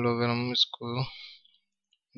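A man speaking Hindi for about the first second.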